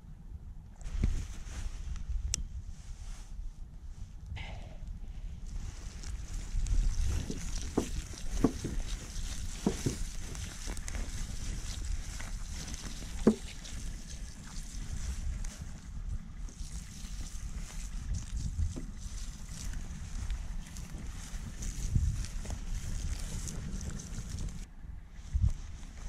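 Campfire of lighter-fluid-soaked split logs and dry grass catching and burning: a steady hiss sets in a few seconds in, with scattered sharp crackles (the loudest about halfway through) over a low rumble.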